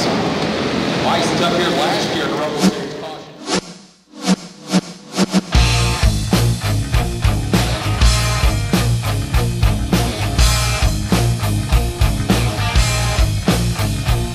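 Race-track noise fades out over the first four seconds, then music with a steady, heavy drum beat starts and carries on.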